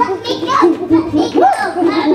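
A young girl's high voice, squealing and crying out without clear words while being tickled.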